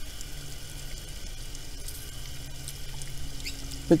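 Fine spray of water sprinkled steadily onto bare, damp garden soil, a continuous light patter.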